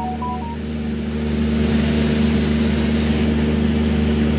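A steady mechanical hum with a hiss over it, growing slightly louder during the first second or so.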